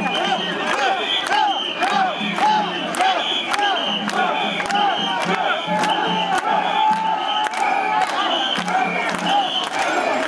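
A large crowd of mikoshi bearers shouting a rhythmic call-and-chant in unison as they carry a portable shrine, the shouts repeating about twice a second.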